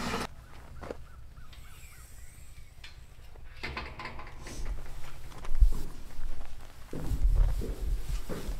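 Quiet outdoor ambience with faint distant bird calls, then footsteps and rustling as a man steps down into a concrete storm shelter's open hatch. There is one sharp knock about five and a half seconds in, and a low rumble near the end.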